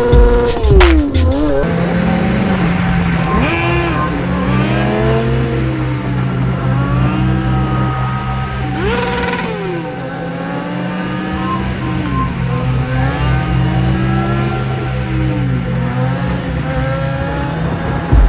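Kawasaki ZX-6R 636 inline-four sport-bike engine rising and falling in pitch over and over as the throttle is worked to hold wheelies, over steady low tones.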